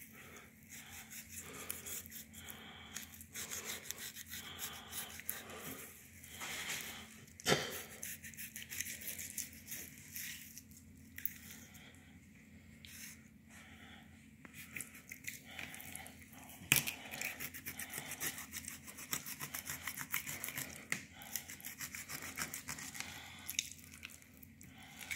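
A knife cutting a large blue catfish's fillet away from the rib cage in quick short strokes: a soft, rapid, irregular scraping of blade on flesh and rib bones. There is a sharper tick about seven and a half seconds in and another about seventeen seconds in.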